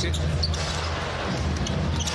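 Basketball game sound in an arena during live play: a steady crowd rumble with the ball dribbled on the hardwood court.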